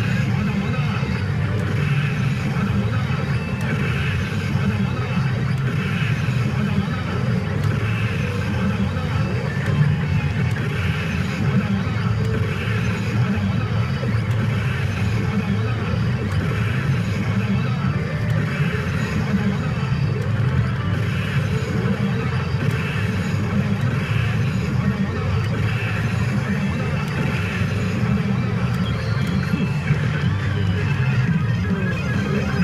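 Steady, loud din of a pachinko parlour: the CR Lupin III pachinko machine's music and voiced sound effects over the constant noise of the surrounding machines.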